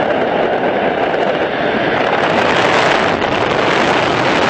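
Loud, steady rush of engine and propeller wind through the open door of a small high-wing jump plane in flight, turning hissier about halfway through as the wind hits the microphone harder at the doorway.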